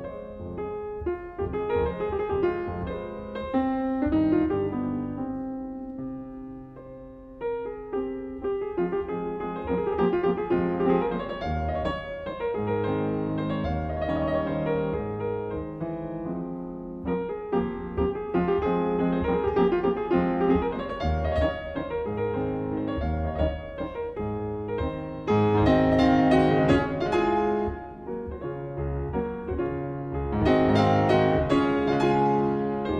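Solo grand piano playing a classical piece with chords and runs, growing louder and fuller about 25 seconds in, easing briefly near the end, then loud again.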